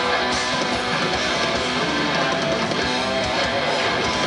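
A live metal band playing a loud, dense guitar-led passage of heavy electric guitars and bass, heard from the audience in a club.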